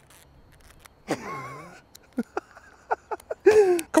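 A man chuckling in short bursts, then laughing out loud near the end, after a drawn-out, wavering, falling sound about a second in.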